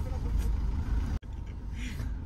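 Low, steady rumble of a car's cabin, with faint voices in it; the sound briefly drops out a little past halfway, at a cut.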